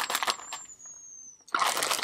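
Clear plastic bag of yarn skeins crinkling as it is handled, in two spells: one at the start and a louder one from about one and a half seconds in, with a quieter gap between.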